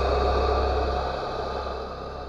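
A steady low rumble under a wash of hiss, an ambient sound-design bed that eases down in the second half.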